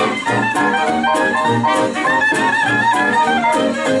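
Live swing jazz band playing, with clarinet and trumpet carrying the melody over a steady washboard beat, guitar and trombone.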